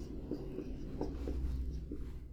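Marker pen writing on a whiteboard: faint scratching of the felt tip with a few small taps as math terms are written.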